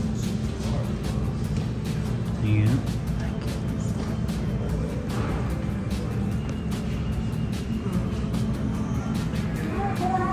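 Background music and distant chatter over a steady low rumble, with one brief low thump about two and a half seconds in.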